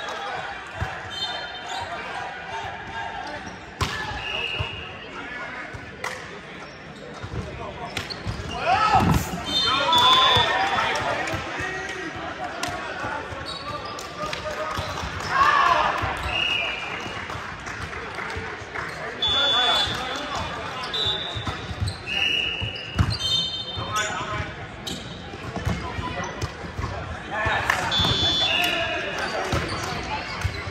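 Indoor volleyball play on a hardwood gym court: sharp ball hits, short high sneaker squeaks on the floor, and players shouting and cheering between points, loudest about nine and fifteen seconds in.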